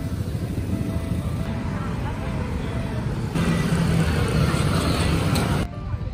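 City street traffic: vehicle engines running close by, growing louder a little past halfway with a steady engine hum, then cutting off abruptly near the end.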